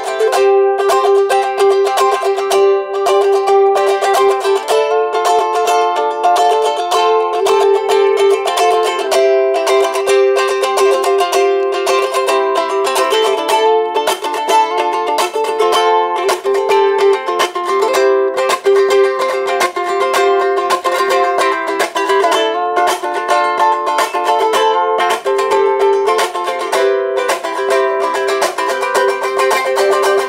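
Handmade G-Labo 'Tabirere' travel ukulele with an ultra-thin 2 cm body, solid acacia top and solid mahogany back and sides, played solo. The chords are strummed with a quick, even run of strokes and change every second or two.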